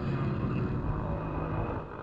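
Racing motorcycle engines running at speed on the track, a steady drone.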